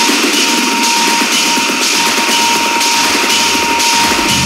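Tech-house/techno DJ mix in a breakdown: the kick and bass drop out, leaving a steady high tone over regular hi-hat-like percussion. The low end builds back in over the last second or so.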